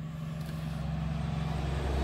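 Low engine rumble of a vehicle, growing louder over the two seconds, over a steady low hum.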